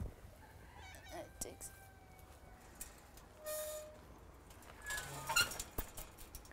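A domestic cat meowing faintly a few times against quiet background.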